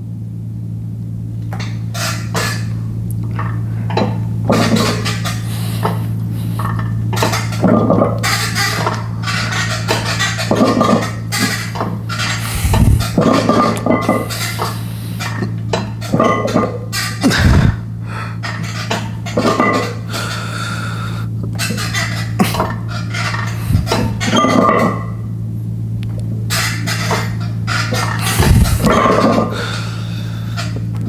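Gym equipment clanking during a set: irregular metallic knocks and clinks, with heavier thuds every few seconds, over a steady low hum.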